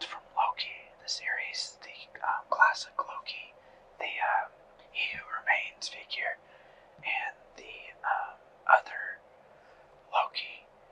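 A person whispering in a steady run of syllables, too breathy to make out the words.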